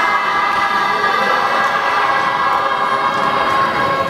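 A large group of young voices singing together, holding long, steady notes.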